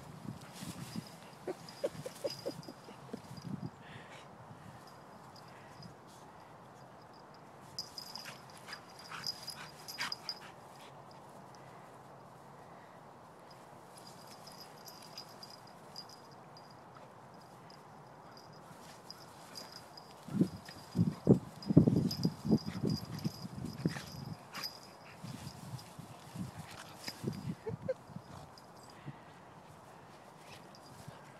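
A dog sniffing and snuffling with its nose in the grass, in irregular short bursts, loudest about two thirds of the way through.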